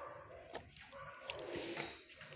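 Dog sounds in a shelter kennel, with a few sharp clicks a little over half a second in and again near the end.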